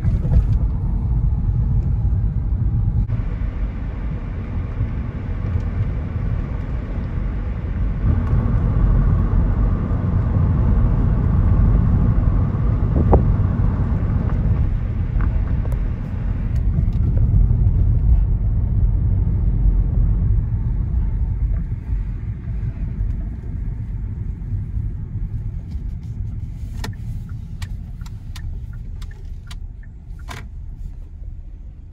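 Car interior driving noise: a steady low rumble of engine and tyres on the road, easing off in the last part as the car slows. A few sharp clicks come near the end.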